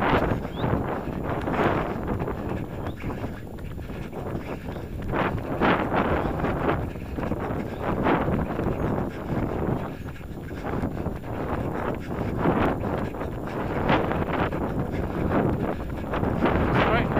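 Runners' footsteps on a tarmac lane, with wind buffeting the microphone in gusts.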